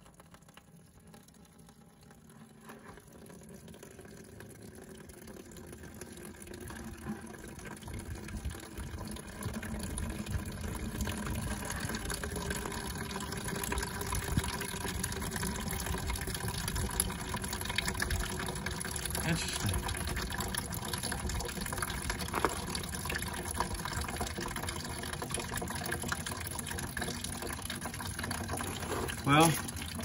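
Trapped water draining out of a hole drilled in a fiberglass boat hull and splashing into a plastic bucket: the sign of water sitting under the floor in the foam-filled hull. Faint at first, it grows louder over the first ten seconds, then runs steadily.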